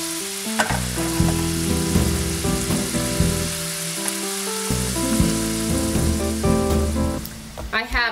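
Snails sizzling and bubbling in a reducing brandy and chicken-stock sauce in a frying pan, with light background music underneath. The sizzle drops away shortly before the end.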